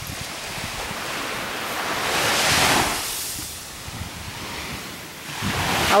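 Small waves washing up on a sandy beach, the rush of the surf swelling to a peak about halfway through and then easing off.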